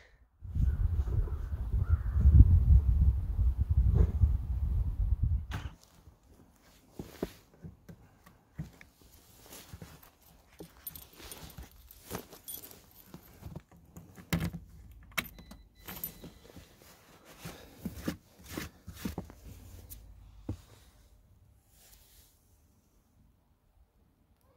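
A loud, low rumble for about the first six seconds, then scattered light clicks, knocks and jingles of a key ring being handled at the ignition switch of a snow-covered compact tractor that has not started.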